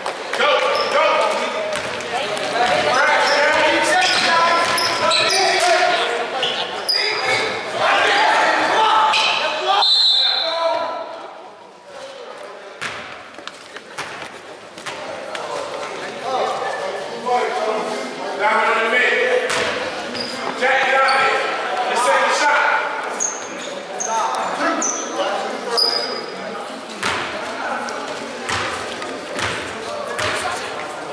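Basketball game in an echoing school gym: voices shouting, the ball bouncing on the hardwood floor, and sneakers squeaking. About ten seconds in a short high whistle sounds, and play noise drops off.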